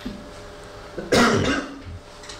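A man coughs once, a short loud cough about a second in.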